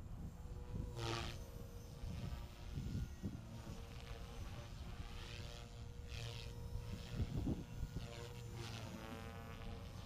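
Align T-REX 450L electric RC helicopter flying aerobatics: the KDE450FX motor and rotor head give a steady whine held at a governed 3,500 rpm. Blade noise swells and fades in sweeping passes as the helicopter maneuvers, most strongly about a second in, around five to six seconds, and near the end.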